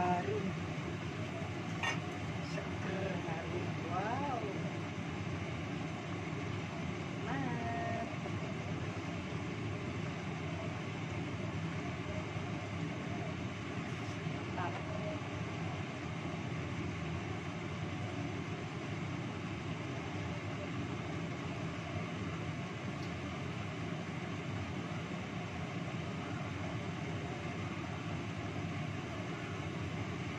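Steady rushing of a lit gas stove burner under a wok of simmering soup, with a few light knocks of a wooden spatula as the soup is stirred in the first half.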